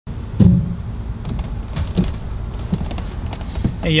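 Someone climbing into a van's driver's seat: a heavy thump about half a second in, then scattered knocks and rustles over a low steady rumble.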